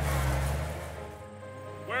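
Remote-controlled toy dump truck driving off through dry leaves: a low motor hum with a rustle that fades after about a second, over background music.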